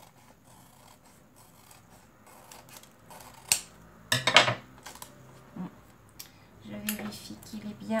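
Scissors snipping through the edge of a laminated plastic pouch in short, separate cuts. A louder clatter comes about four seconds in.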